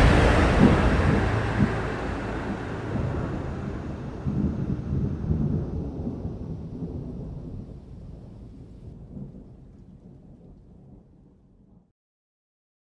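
Long, low rumbling tail of a cinematic boom hit that closes the soundtrack, dying away gradually and fading to silence near the end.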